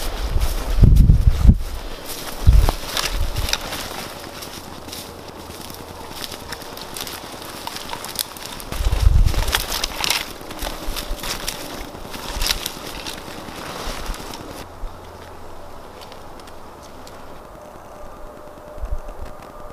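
Boots tramping through dry leaf litter and twigs, a run of irregular crackling crunches with a few dull low thumps. About fifteen seconds in, the crunching stops and only a quieter outdoor background is left.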